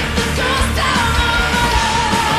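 Live symphonic metal concert audio: full band with heavy drums, and a long held note with vibrato coming in about a second in.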